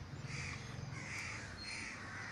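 A crow cawing, about three rough caws in a row, fainter than the lecturer's voice.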